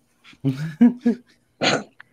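Men laughing: short pitched bursts of laughter, then a breathy burst of laughter near the end.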